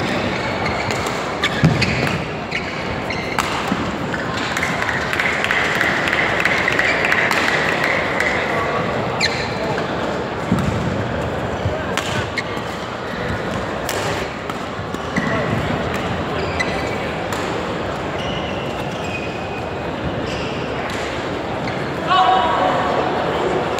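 Badminton rally: a string of sharp racket-on-shuttlecock hits, a few seconds apart, over steady chatter and noise echoing in a large sports hall.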